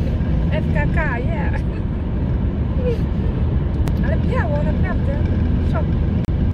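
Steady rumble of road and engine noise inside a moving car's cabin, with short bursts of voice about a second in and again about four seconds in.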